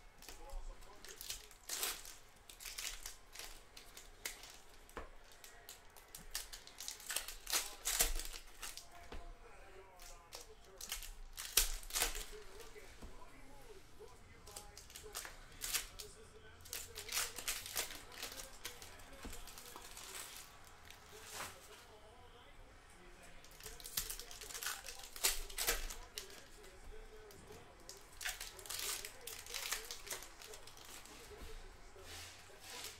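Foil trading-card pack wrappers being torn open and crinkled by hand, with cards riffled and handled between tears, in repeated short bursts of crinkling and rustling.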